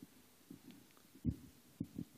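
A few short, soft, low thumps against quiet room tone, the loudest about a second and a quarter in.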